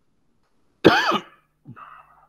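A person coughing: one loud, sudden cough a little under a second in, then a second, smaller cough or throat-clear near the end.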